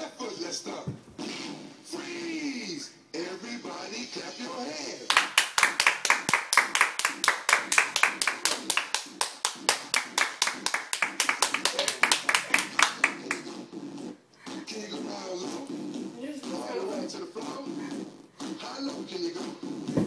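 Rapid hand clapping, about five claps a second, starting about five seconds in and stopping some eight seconds later, over dance music.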